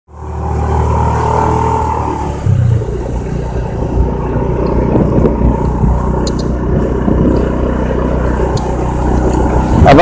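Motorcycle engine running steadily while riding, with wind rush on the microphone; it fades in over the first half second.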